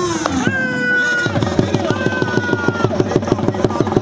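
Dhol drum beating a fast, even rhythm at a village kabaddi match, several strokes a second, with a long held high note sounding twice over it.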